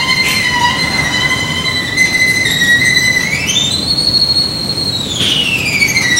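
Solo violin holding a long, very high note. A little past the middle it slides up to an even higher held note, then glides back down near the end.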